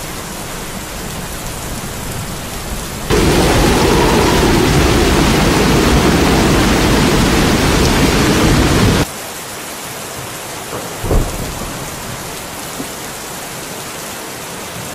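Floodwater rushing, a steady noise of moving water. About three seconds in it jumps suddenly to a much louder, deeper churning of water surging into a flooded room, which cuts off abruptly about nine seconds in. A short thump follows a couple of seconds later.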